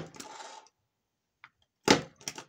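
Small hand stapler pressed down through sheets of paper: a sharp clack at the start and another near the end, with paper sliding briefly after the first.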